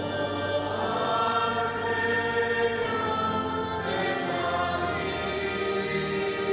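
A church choir singing a hymn in long held notes, with electric keyboard accompaniment.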